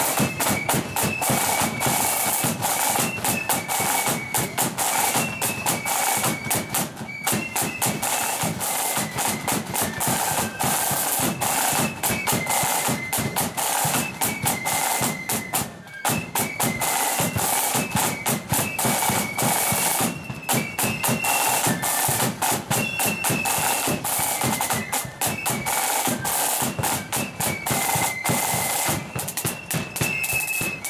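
Marching flute band playing: a high melody on flutes over rapid side-drum strokes and a bass drum beat.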